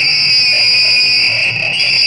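A loud, steady high-pitched whine that holds the same pitch throughout.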